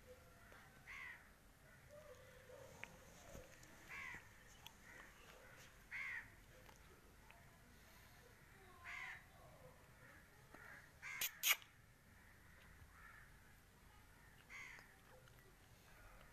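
Faint short, harsh bird calls: five single notes a few seconds apart. Two sharp clicks close together a little past the middle are the loudest sounds.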